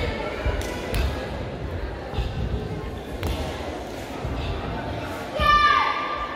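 Bare feet thudding on a wooden gym floor as children perform a karate kata, with voices in a large echoing hall behind. Near the end comes a loud, high-pitched shout (kiai) from a child, falling in pitch.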